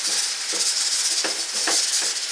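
A steady hissing, rattling noise, with a couple of faint clicks late on.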